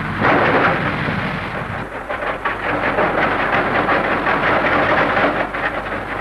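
Coarse copper ore rocks tumbling and clattering: a loud rushing rumble for the first two seconds, then a dense rattle of many stones knocking together.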